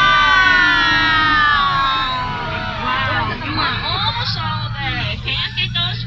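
A long, drawn-out voice sliding slowly down in pitch, then talking from about three seconds in, over a steady low hum.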